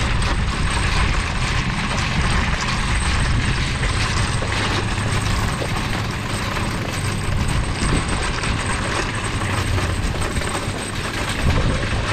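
Wire shopping cart pushed across a paved parking lot: a steady rattle from its wheels and basket.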